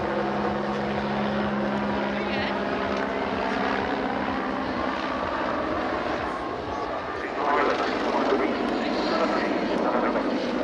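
Agusta A109 military helicopter flying a display pass, its turbine engines and rotor running steadily. It grows louder about seven seconds in as it comes closer.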